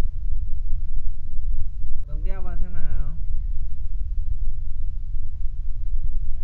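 Steady low background rumble, with one short, drawn-out voice sound of wavering pitch about two seconds in.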